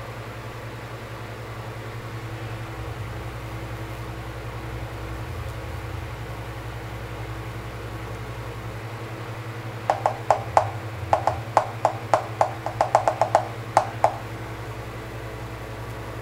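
Hand tapping on a hard surface: a quick, irregular run of about fifteen knocks starting about ten seconds in and lasting some four seconds, over a steady low hum.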